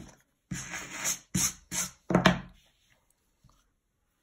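Wire slicker brush drawn through a lock of dyed mohair, about four quick scratchy strokes in two seconds, the last the loudest.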